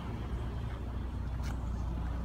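A motor vehicle's engine idling, a steady low hum, with a single short click about one and a half seconds in.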